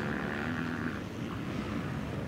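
Motocross bike engines running faintly on the track, a steady engine drone.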